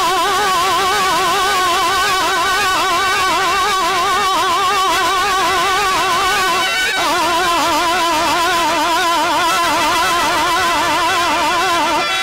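A man singing a Telugu stage-drama padyam in a long drawn-out raga passage, each held note wavering with quick gamaka ornaments. The melody steps down to a lower note about seven seconds in.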